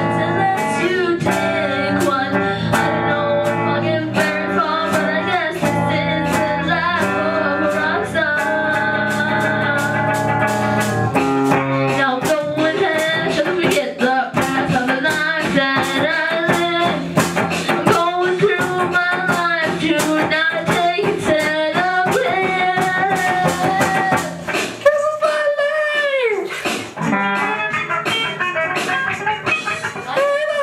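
A rock song played live by a small band: electric guitar through an amp and a drum kit keeping a steady beat, with a male voice singing over them. About 25 seconds in, a long falling glide in pitch sounds out.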